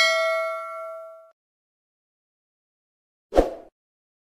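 Subscribe-button animation sound effect: a bell-like ding that rings and fades out over about a second. A short dull thud follows near the end.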